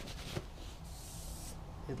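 Faint rubbing and rustling from handling, with a light tap near the start.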